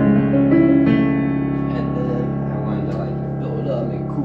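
Digital piano playing arpeggiated chords over added bass notes, the notes sustaining and dying away in the second half as the playing stops.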